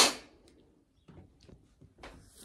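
A short, sharp breath close to the microphone at the very start, hissing and without any voice in it, followed by faint small rustles.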